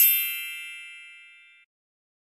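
A single high, bright bell-like ding, a title-graphic sound effect, ringing and fading away over about a second and a half.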